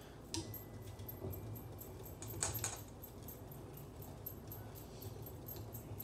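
Wire whisk spun between the palms in a stainless steel bowl of batter, its wires clinking faintly against the metal. There are a few sharper clinks, about half a second in and around two and a half seconds in.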